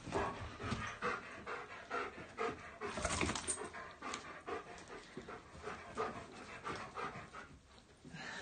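German Shepherd panting hard and fast in excitement, quick rhythmic breaths about two to three a second. A brief knock sounds about three seconds in.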